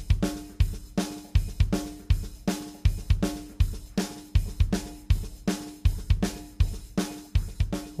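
EZdrummer 2 Prog Rock kit drum loop (kick, snare and hi-hat) playing a steady beat. It runs through tape drive, phaser and reverb while the delay time is turned up, and each hit is followed by a ringing echo tail, giving a really glitched-out sound.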